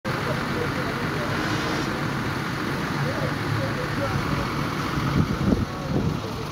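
Steady road and engine noise of a coach travelling at motorway speed, with faint voices in the background. There are a few low bumps just before the end.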